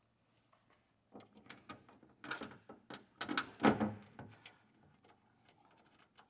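Door card panel being handled against a Suzuki Jimny's rear door as its mounting bolts are started by hand: a run of clicks, knocks and scrapes, with the two loudest knocks about two and a half and four seconds in.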